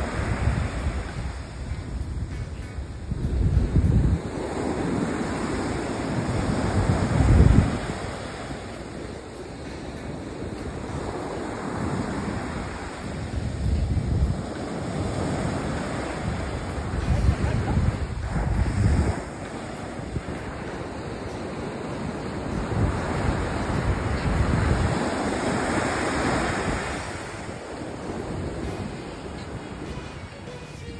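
Surf breaking and washing up a sandy beach, swelling and fading every few seconds, with wind buffeting the microphone in low gusts.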